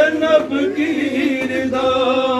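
Male voices chanting a noha, a Shia mourning lament, in long drawn-out held notes.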